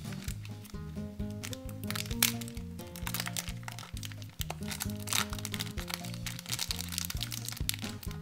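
Background music playing a simple melody, with the crinkling of a thin clear plastic toy wrapper being handled and pulled open on top, the crackles coming thickest in the second half.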